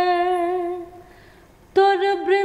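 A woman singing a Bengali folk song unaccompanied. One long held note fades out about a second in, and the next phrase starts near the end.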